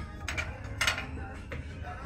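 A porcelain tray is lifted off a wire shelf, with two brief scrapes of china against the shelf about half a second apart, over faint background music.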